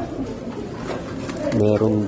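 A low voiced hum, like a man's drawn-out "hmm", in two short parts near the end, over soft background noise.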